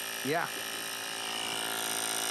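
Sun Joe 24-volt cordless air compressor running steadily, pumping air into a wheelbarrow tire that is nearly full.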